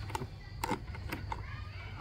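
Hard plastic carrying case and its latches clicking and knocking as they are worked by hand, the latches stuck shut: several sharp separate clicks.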